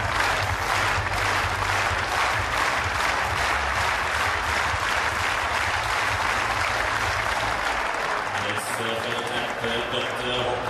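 Stadium crowd applauding steadily, the clapping dense and sustained; a man's voice comes in over it near the end.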